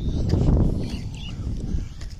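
Wind buffeting a handheld phone's microphone outdoors: a rough low rumble that swells about half a second in and then eases off.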